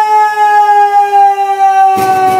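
A male singer holding one long, high sung note with no guitar beneath it, the pitch sinking slightly as it is held.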